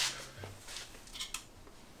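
A sharp click, then a few faint light ticks and scrapes: a brake lever clamp being worked onto a mountain bike handlebar by hand.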